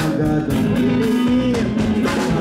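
Live band playing: electric and acoustic guitars over a drum kit, with a lead melody line bending up and down in pitch.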